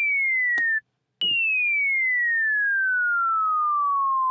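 ES2 synthesizer in Logic Pro playing a plain sine wave with a pitch envelope, a bomb-whistle drop: a single high tone gliding downward cuts off just under a second in, then after a click a second tone starts higher and falls slowly and steadily. The pitch-envelope decay is turned up so the drop sustains longer.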